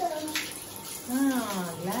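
Water spraying steadily from a handheld shower head onto a child's body, an even hiss, with a voice talking over it in the second half.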